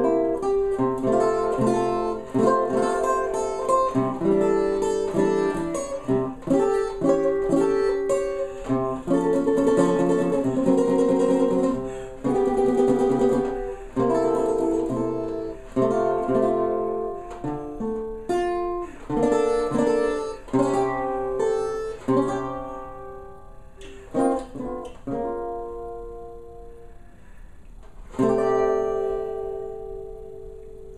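Custom OME 17-fret tenor banjo with a 12-inch head played solo in chord-melody style: strummed chords, with a passage of rapid repeated strokes midway. It thins to quieter, sparser notes and closes on a final chord that rings out near the end.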